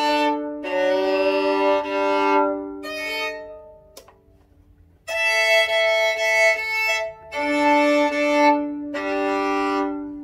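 A $100 violin being tuned: open strings bowed two at a time in sustained double stops of a few seconds each, the out-of-tune strings being brought into fifths. There are short breaks between the strokes and a quiet pause of about a second and a half in the middle with a single click.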